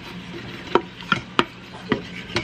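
A wooden spoon scraping and knocking against the bottom of a stainless steel Instant Pot inner pot, deglazing browned meat bits in a little water. There are four sharp scrapes in the second half.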